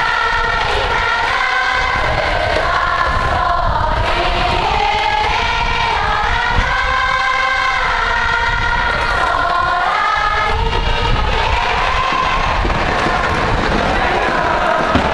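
A high-school baseball cheering section's music: a band playing a sustained melody with the crowd singing along. Wind rumbles on the microphone underneath.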